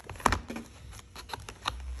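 Handling noise from a book and a clear plastic case being fitted together: a string of light taps and clicks, the sharpest about a quarter second in.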